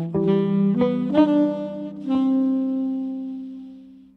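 Tenor saxophone playing a jazz phrase of a few notes, ending on a long held note that fades away near the end.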